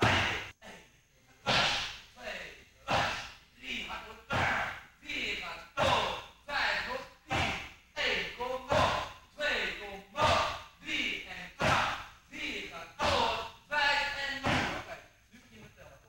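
A fast run of Muay Thai kicks and punches landing on a leather kick shield and pads, about one and a half sharp slaps a second. Many hits come with a short voiced grunt or exhalation from the striker.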